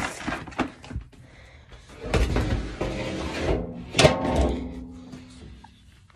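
Horse feed being shaken in a bucket: a rattling rustle, then a sharp knock about four seconds in.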